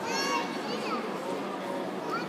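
Spectator crowd murmuring in a large hall, with a loud high-pitched shout in the first half second and a few shorter high calls after it.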